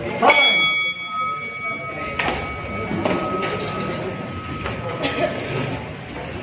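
Boxing ring bell struck once to start the round, ringing out with a long fade over several seconds. A few sharp knocks follow.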